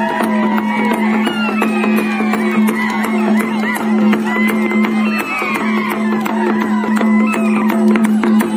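Traditional folk dance music: a steady droning tone under a wavering, gliding melody, with drum and percussion strokes beating throughout.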